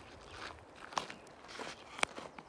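A few separate footsteps on gravel, faint.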